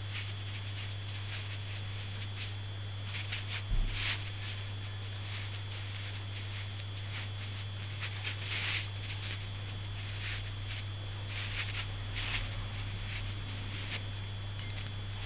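Soft, short scratchy dabs and strokes of a Chinese painting brush on paper, in irregular clusters, over a steady electrical hum.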